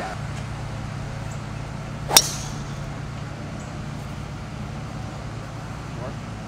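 A golf driver striking a ball off the tee: one sharp crack about two seconds in, with a brief ringing tail, over a steady low hum.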